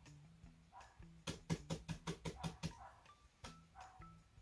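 Laptop keyboard keys clicking faintly as random letters are key-mashed: a quick run of about a dozen keystrokes lasting a second and a half, with a few single keystrokes before and after.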